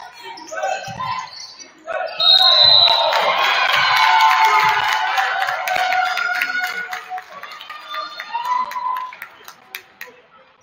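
Basketball game in a gymnasium: a ball bouncing on the hardwood floor, then about two seconds in a short referee's whistle blast calling a foul. A swell of shouting and cheering voices follows and fades over several seconds, with a few sharp bounces near the end.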